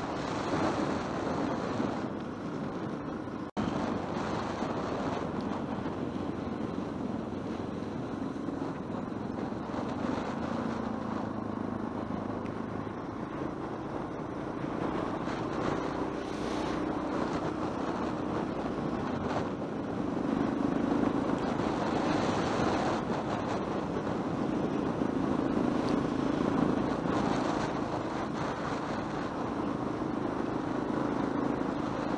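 Yamaha XT600E single-cylinder motorcycle engine running under way with wind rush, its note swelling and easing through the bends, louder in the last third. The sound cuts out for an instant about three and a half seconds in.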